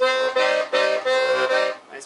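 Hohner Arietta IM piano accordion's 72-button left-hand bass played: a quick run of short bass-and-chord strokes with a beefy sound, stopping shortly before two seconds in.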